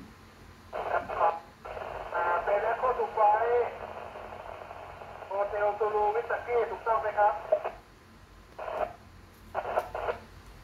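A man's voice coming through a 2 m amateur FM transceiver's speaker, thin and narrow-sounding, talking for about seven seconds from about a second in, with two short bursts near the end.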